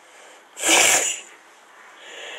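A single short sneeze about half a second in.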